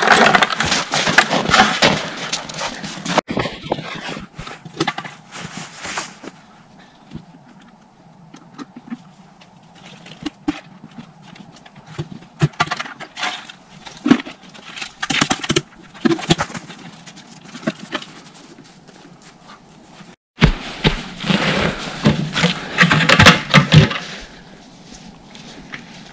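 Footsteps crunching through deep snow mixed with the knocking and rattling of plastic sap pails and lids being handled, loud at first, then a quieter stretch of scattered clicks, then loud again after a sudden break about 20 seconds in.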